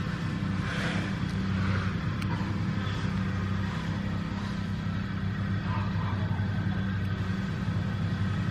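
A steady low hum at an even level.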